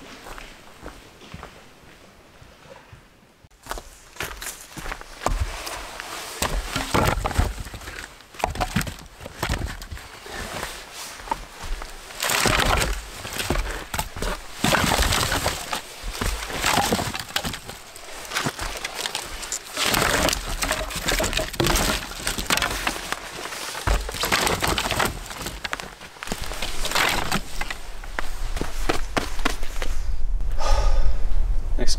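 Dry dead branches and sticks cracking, snapping and clattering as they are broken and piled onto a stack of firewood, with rustling twigs throughout. It starts a few seconds in after a quiet start and comes in busy bursts.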